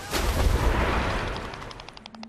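A single boom-like blast sound effect ending the title music, its rushing noise fading away over about two seconds.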